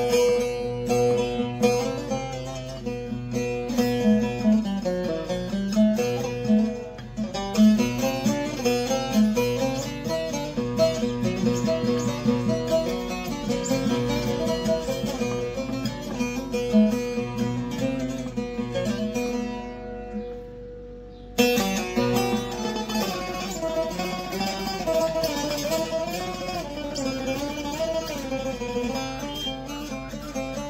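A Diyar-brand saz (bağlama) played solo: a fast plucked melody over ringing open-string drone notes. About two-thirds of the way through the notes die away for a moment, then the playing starts again sharply.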